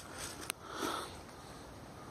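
A puppy sniffing with its nose down in dry leaves and grass: a sharp click about half a second in, then a short, breathy sniff just under a second in.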